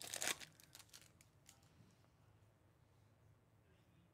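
Foil wrapper of a Bowman Chrome baseball card pack torn open and crinkled, a short run of crackles in the first second or so that dies away, then near silence.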